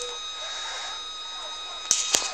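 Steady background hiss with a faint, thin high whine running under it, and a sharp click near the end.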